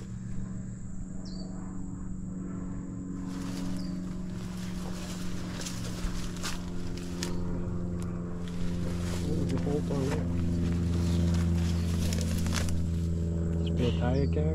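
A steady low mechanical hum, one pitched drone with overtones, growing louder in the second half, with scattered light clicks and rustles.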